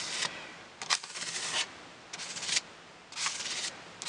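A spatula scraping gesso across a stencil on cardstock, in about four separate strokes roughly a second apart.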